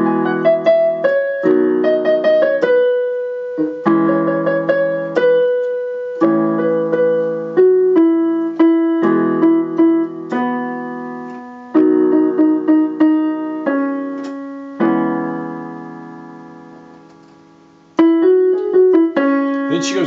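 Casio electronic keyboard with a piano sound playing left-hand chords (A, E, B and C-sharp minor) under a right-hand melody line. Near the end one chord is left to ring and fade for about three seconds before the playing picks up again.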